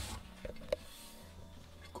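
Handling noise: a dull thump, then two light, sharp knocks in quick succession, followed by a faint low hum.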